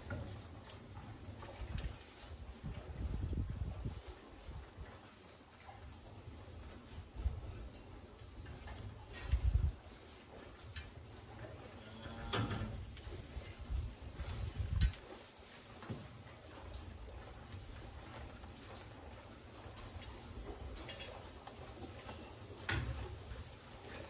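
A Japanese Black cow in labour shifting about on straw bedding: rustling and a few soft, low thumps of her hooves, the loudest about nine and a half and fifteen seconds in.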